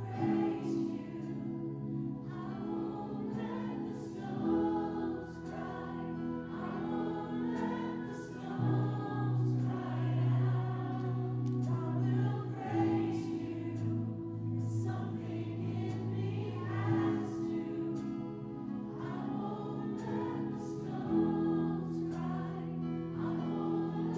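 A church worship band playing a slow worship song: several male and female voices sing together over strummed acoustic guitar and keyboard chords.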